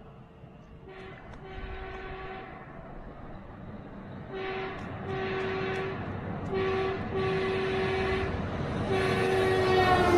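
A series of loud air-horn blasts, long and short, growing louder over a rising rumble as the source approaches, the pitch dropping as it passes near the end.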